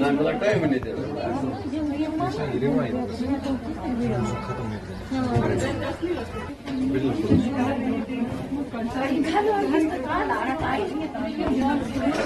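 Several people talking at once: overlapping chatter of voices, with no one voice standing out.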